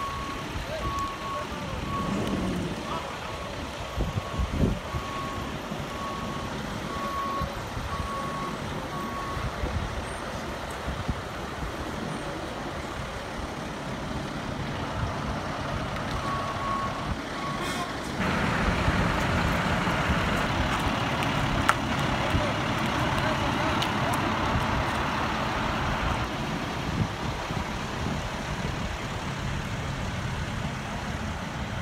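A vehicle's reversing alarm beeping about once a second, with a short run of beeps again near the middle, over an idling heavy truck engine. A louder engine rumble starts after the second run of beeps and lasts about eight seconds.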